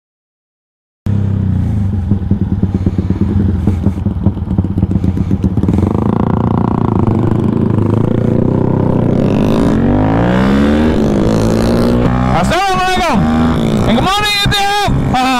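Yamaha Y15ZR's single-cylinder four-stroke engine heard from the rider's seat, starting about a second in: it chugs at low revs, then its pitch rises and falls repeatedly as the bike pulls away and shifts through the gears.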